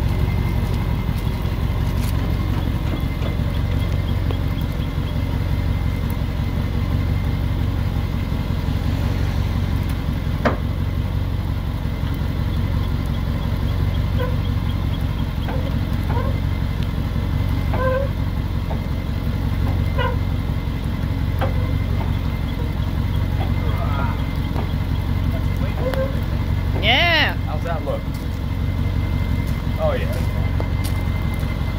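Ford F-250 Super Duty pickup's diesel engine idling steadily, left running to let exhaust-gas and transmission temperatures come down after heavy hauling before shutdown. A few short squeaks come in over it in the second half, the loudest one near the end.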